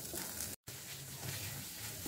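Faint sizzling of cauliflower and potato stuffing frying in oil in a pan while a silicone spatula stirs and mashes it, broken by a brief cut to dead silence about half a second in.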